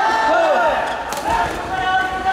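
Players and teammates at a badminton doubles match calling out in loud, drawn-out shouts, with two sharp taps a little over a second in.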